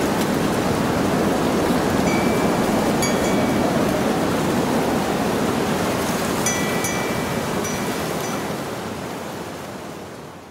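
A steady rushing noise with a few short, high, level tones over it, fading out over the last few seconds.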